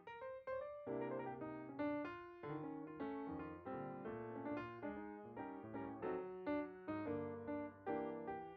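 Background piano music, gentle notes struck in a steady pattern with chords.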